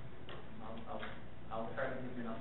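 Indistinct speech: a voice talking in short phrases over a steady low hum.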